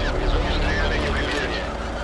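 Film battle-scene sound mix: a steady low rumble under indistinct shouting voices.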